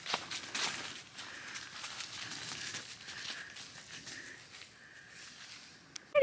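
Footsteps crunching through dry fallen leaves, an irregular crackle that grows fainter toward the end.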